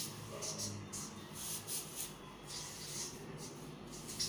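Marker pen writing digits on a wall chart: short, irregular scratchy strokes, a few a second, over a faint steady hum.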